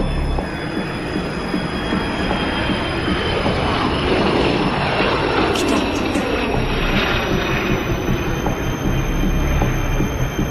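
A heavy vehicle passing: a loud rumbling noise that builds to a peak about halfway through and eases off again, with thin steady high tones held throughout.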